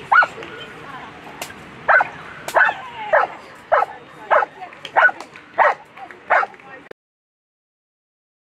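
A dog barking repeatedly: one sharp bark, then a run of about eight more in quick succession, roughly one every 0.6 s. The sound cuts off abruptly near the end.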